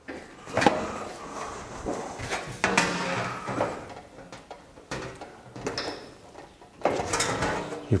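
Manual sheet-metal box and pan brake bending a galvanized sheet-metal edge: metallic clanks and knocks of the brake's clamping and bending leaves, with the rattle and flex of the thin sheet as it is moved, a sharp knock under a second in.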